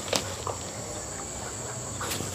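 Steady high-pitched insect trill, cricket-like, with one short tap just after the start.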